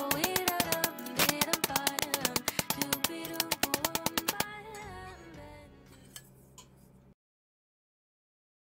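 Rapid light blows of a white plastic-faced mallet on a thin silver sheet lying on a steel bench block, several strikes a second, over background music. The strikes and music fade out over a few seconds after about four and a half seconds in, and the sound cuts to silence at about seven seconds in.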